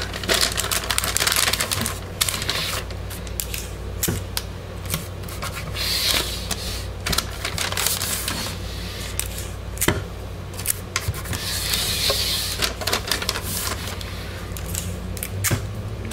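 Paper liner crinkling and rustling with many small irregular clicks as it is pressed and folded into the corners of a wooden soap mold, over a low steady hum.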